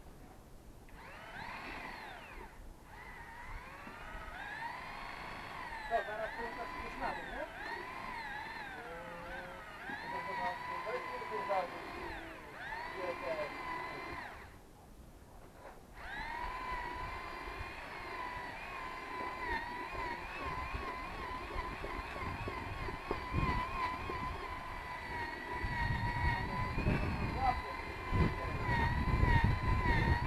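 A singing voice with gliding phrases and long held, wavering notes, stopping briefly about halfway through. A low rumble grows loud over it near the end.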